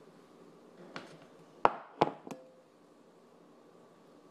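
A few sharp knocks of kitchen things set down on a counter: a light one about a second in, two loud ones close together a little after halfway, and a softer last one that leaves a short ring.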